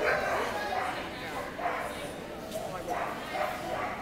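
A dog yipping and whining a few times, with people talking in the background.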